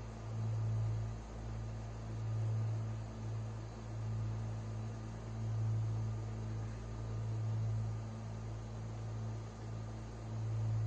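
A low steady hum over faint hiss, swelling and fading every two to three seconds.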